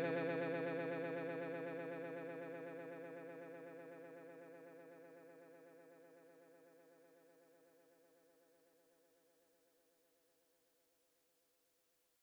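The closing sustained chord of a funk/disco dub track, held with a fast wobbling vibrato and fading out steadily until it is gone about ten seconds in.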